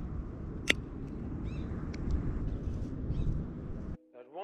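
Wind rumbling on the microphone by an open pond, with one sharp click a little under a second in and a few faint, high chirps.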